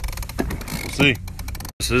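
A man's voice briefly over a steady low rumble and hiss on an open boat at sea. The sound drops out abruptly for an instant near the end.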